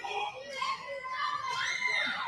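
Spectators' voices in the crowd, with high-pitched calling and shouting like a child's, one long call rising and falling in pitch near the end.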